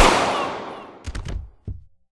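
Gunshots: one very loud shot at the start with a long echo dying away, then a quick burst of several more shots about a second in and one last shot shortly after.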